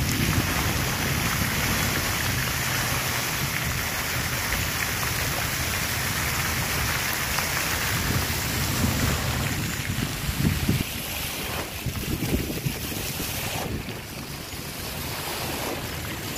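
Wind buffeting the microphone over a steady outdoor hiss, with stronger gusts about 10 to 13 seconds in.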